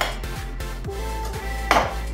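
Background music with held notes, over a metal utensil scraping and clicking against a glass baking dish as a sticky rice cake is cut, with one louder scrape near the end.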